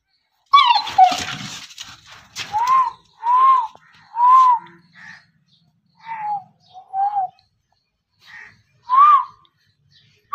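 Pit bull whining in short, high, rising-and-falling yelps about once a second, excited while trying to get at a rat. There is a burst of scuffling and scrabbling about a second in.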